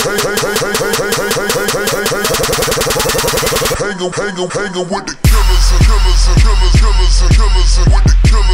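Hip hop backing track with a fast, rattling beat that thins out around halfway, then a heavy bass beat drops in about five seconds in and the music gets louder.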